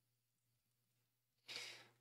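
Near silence, then a short breath drawn in near the end.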